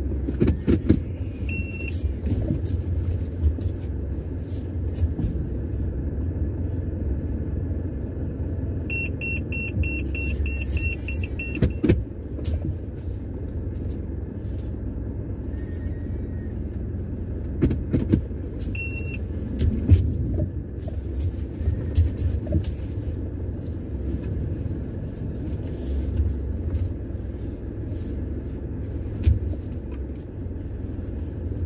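Car running at low speed, heard from inside the cabin as a steady low rumble, with scattered light knocks. An electronic beeper in the car sounds a single beep a couple of seconds in, a fast run of beeps, about four a second for three seconds, near the middle, and one more beep later.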